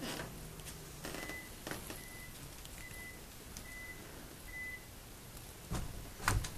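A short, high electronic beep repeating five times, about once a second, then stopping. Faint clicks and a soft thump sound around it.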